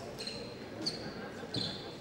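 Fencers' footwork on the piste: rubber shoe soles give three short, high squeaks about a second apart, and the later two come with sharp foot stamps.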